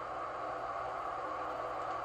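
Steady background hiss with no distinct events in it.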